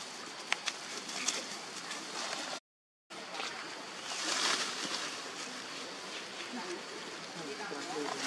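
Leaves and undergrowth rustling and crackling as young long-tailed macaques scuffle, with a few sharp crackles in the first couple of seconds and a louder rush of rustling about four seconds in.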